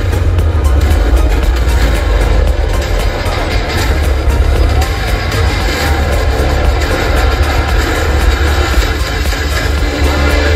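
Loud live concert music played through a stage sound system, with a heavy, steady bass.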